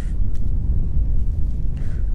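Wind buffeting the microphone: a steady low rumble, with one faint click about a third of a second in.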